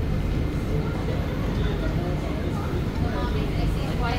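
Steady low rumble of a Circle Line C830C metro train standing at a station with its doors open, with faint voices of people in the background.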